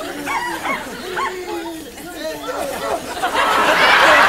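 Excited voices with short, rising calls and laughter. About three seconds in, a loud burst of audience applause and laughter begins.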